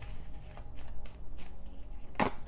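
A deck of tarot cards being shuffled by hand: soft, irregular rustling and flicking of the cards.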